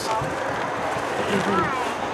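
Quiet lull in the talk: a few faint voices in the background over a steady hiss.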